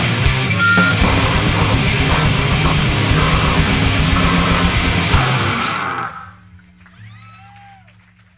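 Grindcore band playing live through a raw bootleg recording: distorted guitar, bass and fast drumming, loud, until the music stops about six seconds in. A faint steady hum and a short high rising-and-falling tone are left before the sound fades out.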